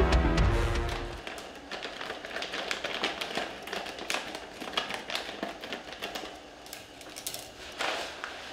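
Background music dies away in the first second. It is followed by a clear plastic bag crinkling and rustling as it is handled, in a run of small irregular crackles.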